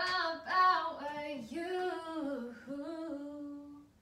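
A woman's solo voice singing a melody with no instruments, gliding between notes and ending on a long held note near the end.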